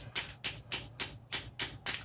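Rubber-head mallet striking the handle of a steel scraper in rapid, even taps, about four a second, driving the blade under old glued-down floor tile.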